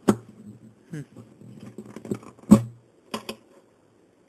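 Clicks and knocks of plastic bridge pins being worked loose and pulled from the bridge of a Marquis HM-6371 acoustic guitar whose strings are slack. The loudest knock comes about two and a half seconds in and is followed by a short low ring from the guitar.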